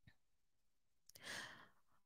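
Near silence, broken a little past the middle by one soft, short breath or sigh close to the microphone, the intake before speaking.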